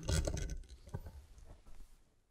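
A plastic screw-on lid being twisted shut on a jar: scraping of the threads with scattered clicks, loudest at first and thinning to a few light clicks.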